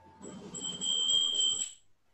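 A loud, shrill electronic-sounding tone, steady in pitch with a slight flutter, lasting about a second and a half and cutting off suddenly, over a low rumbling noise.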